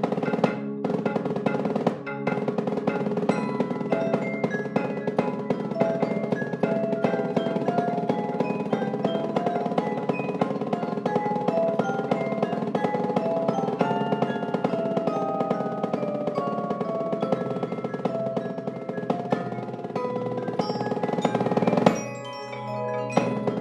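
Percussion ensemble playing live: marimbas, xylophone and vibraphone struck with mallets carry a melody of short, ringing notes over sustained lower notes, while a snare drum played with sticks keeps up a fast, continuous pattern of strokes.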